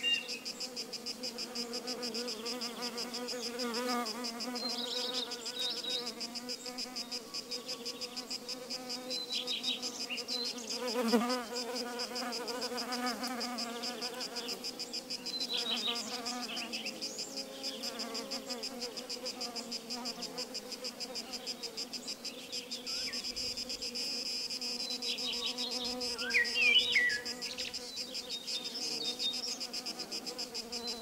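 Many honeybees buzzing together in a steady, pulsing drone, with a high, fast, even trill above it. A few short chirps rise out of it late on.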